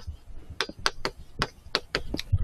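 Chalk striking and scratching on a blackboard as handwritten letters are drawn: a quick run of short, sharp clicks, about four a second.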